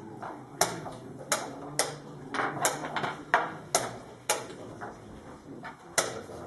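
Sharp clicks and knocks of a blitz chess game: wooden chess pieces set down on a wooden board and the chess clock pressed in quick turns. About eight come irregularly through the first four and a half seconds, then a pause and one more near the end.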